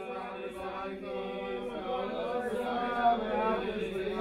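Wordless male chanting over a held low drone, slowly growing louder.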